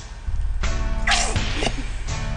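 A woman's short shriek about a second in, falling in pitch, as something is squeezed onto her head; background music with steady held notes plays throughout.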